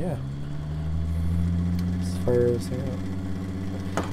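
Bedini pulse motor with a ferrite-magnet rotor running in SG mode: a steady low electrical hum from the rotor and pulsed coil, with a few faint clicks.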